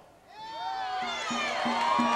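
Rally crowd cheering and shouting, many voices rising together just after the start and growing louder.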